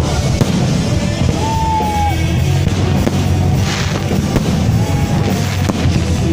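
Loud music with a heavy low beat, with fireworks going off over it in scattered bangs.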